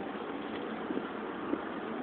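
Steady engine and road noise inside the cabin of a moving car.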